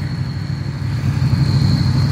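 A vehicle engine idling steadily, a low even drone.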